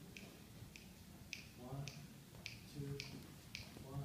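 Fingers snapping a steady beat, a little under two snaps a second, counting off the tempo just before a jazz combo starts to play.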